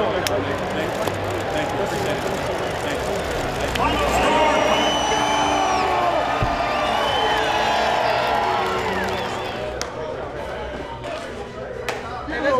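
Stadium crowd cheering and shouting, many voices overlapping. It swells about four seconds in and eases off near the end.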